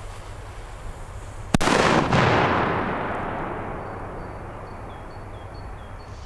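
A single very loud bang from a Scorpios T817B flash-powder banger of 1.6 g, about one and a half seconds in, followed by a long echo that fades away over about three seconds.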